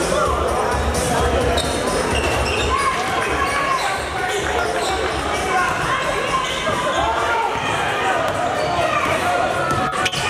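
Basketball bouncing on a hardwood gym floor as the ball is dribbled, with people talking and shouting in a large hall and music playing underneath.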